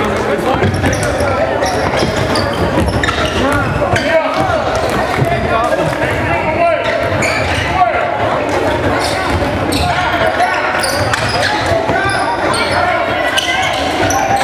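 Live basketball game in a gym: a basketball dribbled on the hardwood court, with voices from players and the crowd echoing through the hall.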